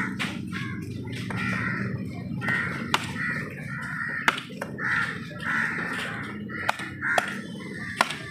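Crows cawing again and again, with a few sharp knocks of a heavy knife chopping fish on a wooden log block.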